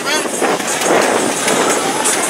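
Street noise from a crowded car meet: voices and vehicle sound, with a broad rush of noise that swells to its peak about a second in and then eases off.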